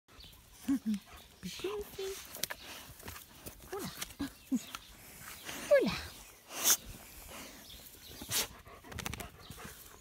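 A woman's voice cooing and laughing at a dog, in short drawn-out falling calls ("oula"), with a couple of brief rustles from close handling as she pets it.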